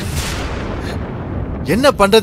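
Dramatic sound-effect hit: a sudden boom-like burst whose noise dies away over about a second and a half. A voice starts speaking near the end.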